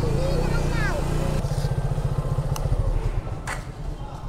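Motorcycle engine running at low revs as the bike rolls slowly to a stop, going quieter about three seconds in.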